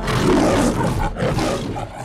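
The Metro-Goldwyn-Mayer logo's lion roaring twice: a rough roar of about a second, a brief break, then a second roar of just under a second.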